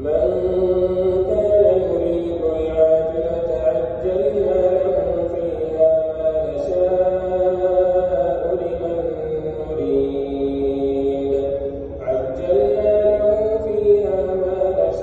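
A man's voice chanting an Islamic prayer recitation in long, melodic held phrases. It starts suddenly and pauses briefly about twelve seconds in.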